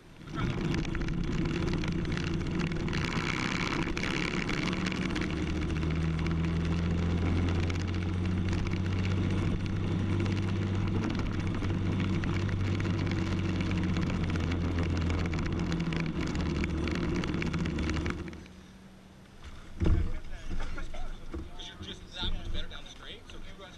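Briggs & Stratton LO206 kart engine, a single-cylinder four-stroke, running steadily at low revs with its pitch unchanging, then shut off abruptly about 18 seconds in. A single knock follows a couple of seconds later.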